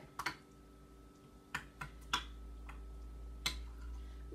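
A metal spoon stirring a thick yogurt dip in a bowl, clicking against the bowl about half a dozen times at uneven intervals.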